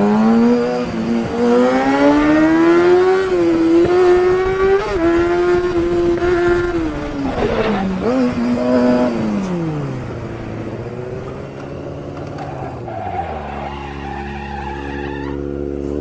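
Sport motorcycle engine pulling hard, its pitch climbing for the first few seconds and holding high at speed, with wind noise on a helmet microphone. About ten seconds in the revs fall away as the bike slows, and it settles into a steady idle near the end.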